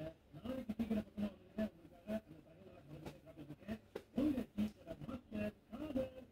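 Hands patting and tapping on a person's head during an Indian head massage: short, hollow-sounding pats that come a few times a second in an uneven rhythm.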